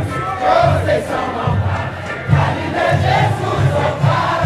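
Large crowd singing a samba-enredo together, over samba-school drums beating a steady, pulsing low rhythm.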